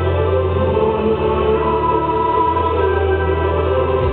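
A woman singing a song into a microphone over instrumental accompaniment, with long held notes above a sustained bass line.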